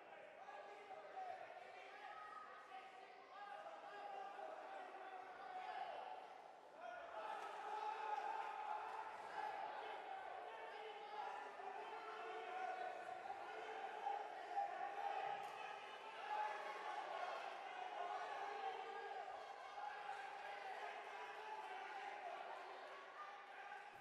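Faint, mixed crowd voices echoing in a large sports hall during a children's karate bout.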